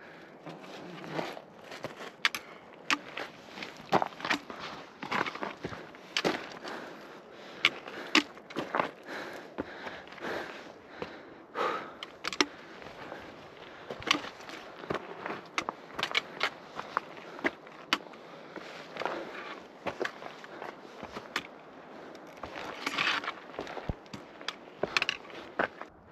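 Footsteps on a steep trail of loose rock and gravel, with sharp irregular clicks of trekking-pole tips striking stone, one or two a second, a little busier a few seconds before the end.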